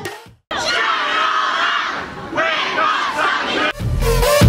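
A crowd of teenagers shouting and cheering, many voices at once, with a brief lull about two seconds in. The backing music cuts out just before the shouting starts and comes back near the end.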